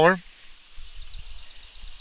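Quiet outdoor background: a low, uneven rumble of wind on the microphone and a faint, rapid, evenly repeated high chirping.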